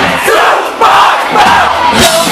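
A concert crowd shouting together, many voices at once, with the band's bass and drums dropped out.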